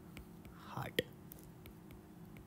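A soft, breathy voice sound about half a second in, then a sharp click near one second, with faint light ticks of a stylus writing on a tablet screen.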